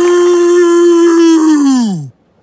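A male cartoon character's voice holding one long, loud, drawn-out jeer at a steady pitch, which slides down and trails off near the end.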